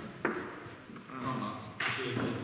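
A single sharp tap of a wooden chess piece set down on the board about a quarter second in, with a brief rustling hiss near the end.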